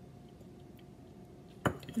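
Quiet room with a faint steady hum, then a single sharp knock about one and a half seconds in: a ceramic mug set down on a hard counter.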